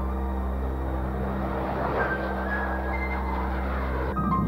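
Jet noise from a Lockheed U-2's single turbojet at takeoff: a rushing sound that swells to its loudest about halfway through and then eases off, under a steady droning music score.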